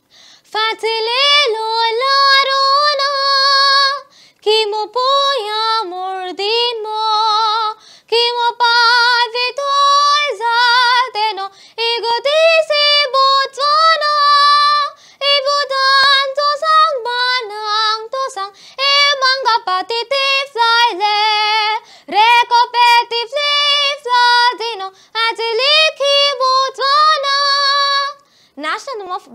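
A young girl singing a national anthem in Setswana, solo and unaccompanied, in long held phrases with brief pauses for breath between them.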